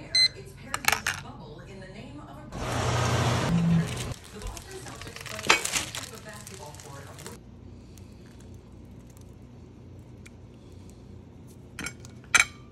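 A digital kitchen timer beeping as its buttons are pressed, followed by clicks and kitchen clatter. A loud burst of rushing noise lasts about a second and a half, and a sharp clack comes a couple of seconds later.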